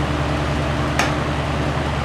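Oxygen-propane bench torch burning with a steady hiss, over a constant low hum, with one sharp click about halfway through.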